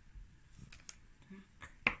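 A kitchen knife cutting through a chocolate bar on its plastic wrapper: a few short, sharp cracks and clicks as the blade snaps through the chocolate, the loudest just before the end.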